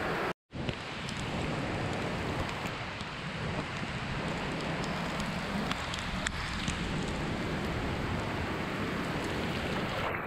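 Heavy rain falling steadily on a muddy puddle and wet ground. The sound cuts out for a moment just after the start.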